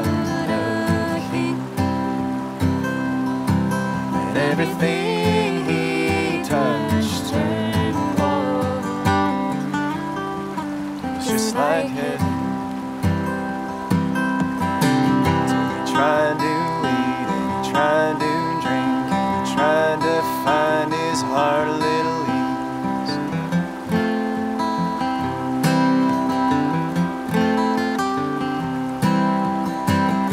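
Acoustic guitar being strummed through an instrumental break between the verses of a folk song.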